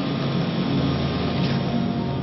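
A steady mechanical drone: a noisy hiss over a held low hum, with no clear change.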